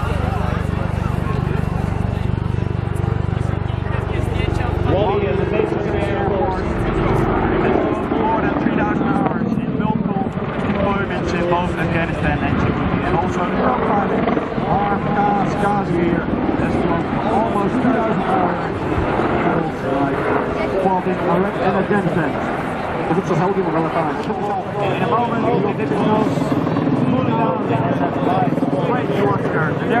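AH-64 Apache attack helicopter's rotor and twin turbine engines during a display flight, heard under voices, with the low rotor rumble strongest in the first few seconds.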